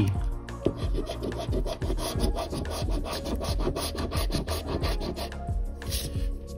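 A coin scraping the silver latex coating off a paper scratch-off lottery ticket in rapid, repeated strokes.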